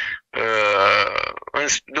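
A man's voice over the phone holding a long drawn-out hesitation sound, an 'uhh' of about a second, before speech resumes near the end.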